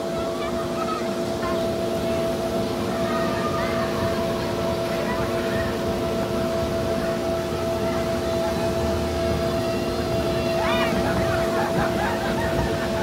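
Steady two-tone mechanical hum of the air blower that keeps an inflatable jumping pillow inflated, unchanging throughout. Children's voices can be heard faintly behind it, with a brief call about three-quarters of the way through.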